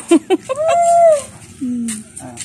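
A rooster crowing: a few short clipped notes, then one long arched call, with a lower falling note near the end.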